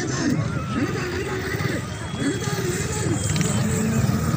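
Voices of a crowd of spectators, with men calling out in long rising-and-falling shouts over a steady low rumble.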